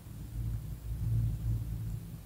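Faint low rumble with a steady low hum under it, swelling slightly a few times.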